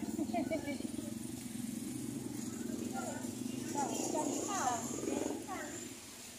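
Faint, indistinct voices of people talking quietly, over a steady low hum.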